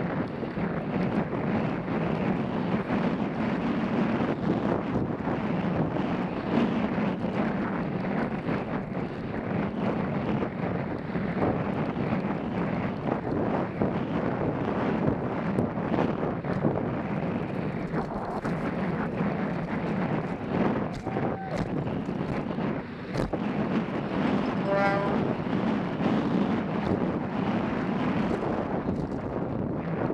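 Helmet-camera sound of a downhill mountain bike ridden fast over a dry, loose dirt trail: steady wind rush on the microphone with tyres scrubbing over the dirt and the bike clattering over bumps throughout.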